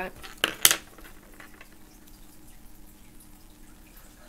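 Two short sharp knocks and brushes about half a second in, as a hand sweeps over a sheet of drawing paper on a table. They are followed by faint handling sounds over a low steady hum.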